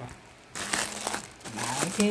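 Clear plastic wrapping around a new bag crinkling loudly as it is handled and pulled open, starting about half a second in.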